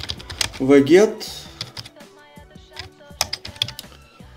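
Typing on a computer keyboard: a run of separate, irregular key clicks as a command is entered, with a brief spoken sound about a second in.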